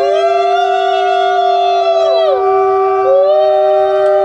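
Conch shells blown together in a ritual: one holds a single steady note throughout, while another sounds two long blasts that bend up at the start and down at the end, the first ending about two and a half seconds in and the second starting about a second later.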